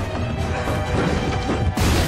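Action-film soundtrack: dramatic score under crashing sound effects, with a sudden loud crash near the end.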